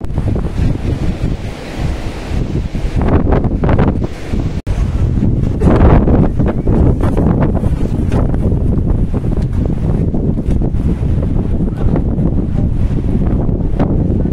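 Wind buffeting the microphone: a loud, low rumble that surges and eases in gusts, with a momentary dropout about four and a half seconds in.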